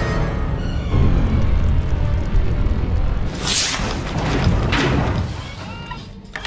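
Dramatic orchestral film score whose tones fade out in the first second, over a deep, continuous low rumble. Two loud sound-effect noise bursts come about three and a half and five seconds in.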